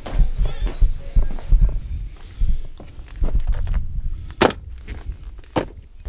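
Footsteps and camera handling as a person walks, with irregular low thuds. Two sharp clicks come about a second apart near the end.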